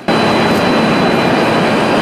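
Loud, steady industrial noise of a synthetic rubber plant's production floor: an even mechanical hiss and hum from machinery and air handling, with a faint steady high whine, cutting in abruptly.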